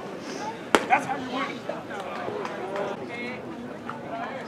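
A single sharp pop of a pitched baseball striking the catcher's leather mitt, a little under a second in, over background voices.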